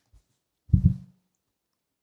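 Handling noise from a table microphone on its stand being turned to a new speaker: a faint knock, then a short cluster of dull low thumps a little before the middle.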